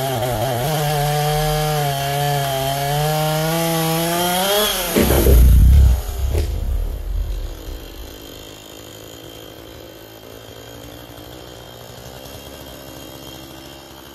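Chainsaw running under load as it cuts through a tree trunk, its engine note rising near the end of the cut. At about five seconds the tree comes down with a heavy, loud crash and crackling of branches. After that the saw runs on quietly.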